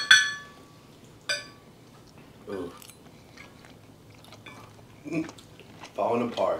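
A fork clinking against a ceramic plate twice, at the very start and about a second in, each strike ringing briefly; then faint eating sounds and two short murmured voice sounds.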